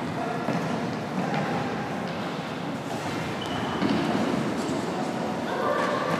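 Sports-hall ambience during a futsal match: players' and spectators' shouts and chatter echoing in the large hall. A brief high tone comes about three seconds in, and the voices grow busier near the end.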